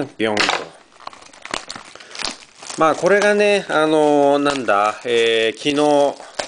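Plastic shrink wrap crinkling and tearing as it is pulled off a trading-card box, heard as short crackles clearest between about one and three seconds in. A voice makes several drawn-out wordless sounds over it, each under a second, and these are the loudest thing.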